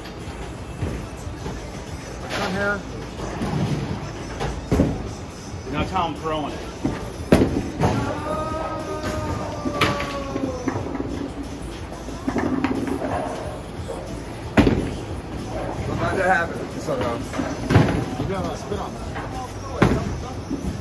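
Bowling alley ambience: several sharp crashes and thuds of balls and pins from the lanes, the loudest about two thirds of the way through, over background chatter and music.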